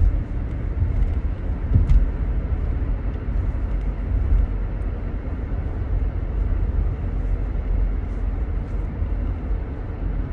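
Steady low road and engine rumble inside a moving car's cabin, with one brief thump just under two seconds in.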